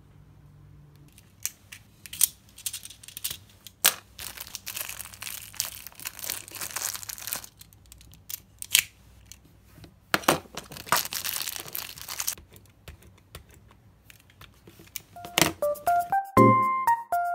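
Clear plastic packaging crinkling and tearing as a correction tape refill is unwrapped and handled, in two long spells with a few sharp plastic clicks.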